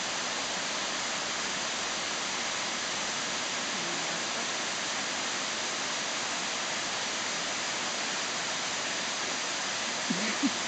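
Steady, even rushing noise of running water, unchanging throughout.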